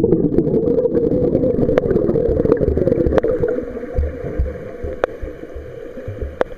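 Freestyle swimmer's strokes and kick heard underwater: dense churning and bubbling water that slowly fades as the swimmer moves on. Low thuds come in the second half, and a few sharp clicks.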